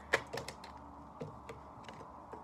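Tarot cards being shuffled and handled: a quick run of light clicks and snaps in the first half second, then a few scattered taps of card on card.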